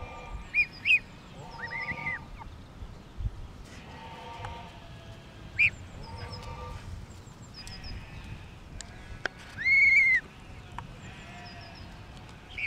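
Gosling and poultry calling: a series of short, high, arched peeps, the loudest and longest about ten seconds in, with lower drawn-out calls in between.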